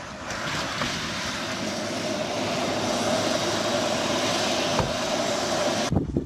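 Cobra helicopter flying, a steady rush of engine and rotor noise with a faint whine that rises slightly; the sound cuts off suddenly near the end.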